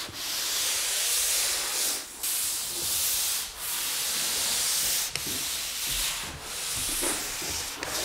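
Long-handled automatic drywall finishing tools, a corner finisher and then a flat box, scraping joint compound onto the drywall: a scraping hiss in several long strokes of a second or two each, with brief breaks between.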